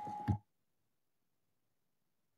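Faint room sound through an open conference desk microphone, with a steady mid-pitched tone and a couple of short knocks. It cuts off suddenly about half a second in as the microphone channel closes, leaving dead silence.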